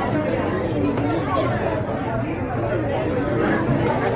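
People's chatter: voices talking steadily around the microphone, with no single clear speaker.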